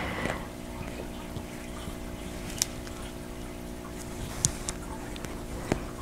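Hands smoothing and pinning layers of quilt top, batting and backing with straight pins: faint fabric rustling with three small sharp ticks, over a steady low room hum.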